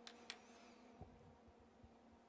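Near silence: a faint steady hum with a few faint clicks.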